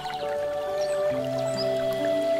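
Slow, soft relaxation piano music with long held notes, laid over the trickle and drip of water from a bamboo spout fountain.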